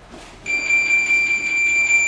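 Boxing round timer sounding one long, steady, high electronic beep that starts about half a second in and runs on for about two seconds.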